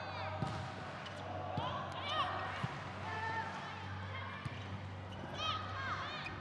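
Indoor volleyball rally: a few sharp hits of the ball and the short squeaks of sneakers on the gym floor, with voices in the background, over a steady low hum.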